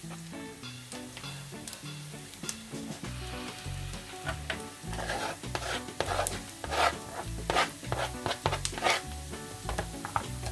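Chopped onion sizzling in vegetable oil in a frying pan as grated carrot is pushed in from a plastic cutting board, with a knife scraping across the board. Background music plays underneath, its bass notes growing stronger about three seconds in.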